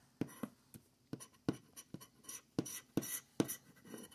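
A scraper tool scratching the coating off a scratch-off lottery ticket in a run of short, quick strokes, roughly three a second.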